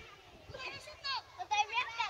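Children's high voices calling and chattering in the open, with a few louder calls from about a second in.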